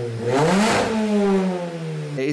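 Mini Cooper S R53's supercharged 1.6-litre four-cylinder engine revved once while stationary: the pitch climbs quickly about half a second in, then falls away slowly.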